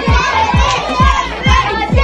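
Dance music with a deep kick drum beating about twice a second, under a classroom of students shouting and cheering.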